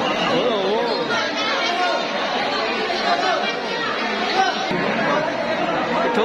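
Crowd chatter: many people talking over one another at once in a packed hall, a steady overlapping hubbub of voices.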